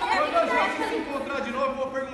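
Chatter of several voices talking at once, children in a group.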